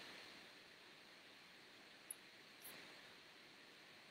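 Near silence: room tone, with two faint high-pitched ticks about two seconds in.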